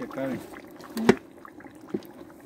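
Wooden paddle stirring thick mole paste frying in lard in a glazed clay cazuela, a soft wet scraping, with a sharp knock about a second in and a lighter one just before the end.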